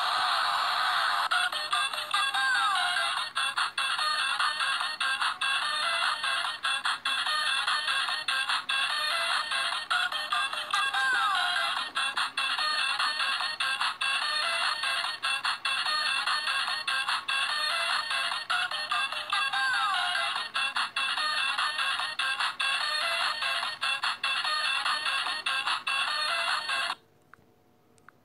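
Electronic song from a knock-off musical toy, recorded on a phone and played back through its small speaker, thin and tinny with no bass. It cuts off abruptly about a second before the end.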